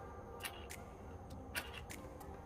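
Kindling being handled and laid in a small folding fire pit: a few light wooden clicks and taps, the sharpest about half a second and a second and a half in, over a low steady rumble.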